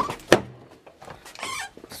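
Car door being opened: two sharp clunks from the latch and door about a third of a second apart, then a brief rustle of handling things inside.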